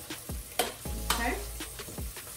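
Hot jerk chicken wings sizzling in a Ninja air fryer basket as they are turned over with tongs, with a few sharp clicks of the tongs against the basket.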